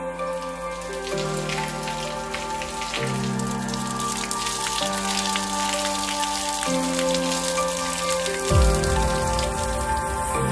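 Water poured from a bucket splashing into a carved stone sink bowl and draining out through its plug hole: the bowl's first water test. Slow background music plays throughout, and there is one low thump near the end.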